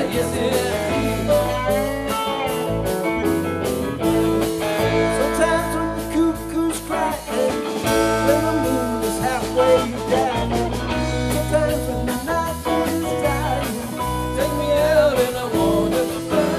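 Live rock band playing, with several electric guitars over bass, drums and keyboard, and singing.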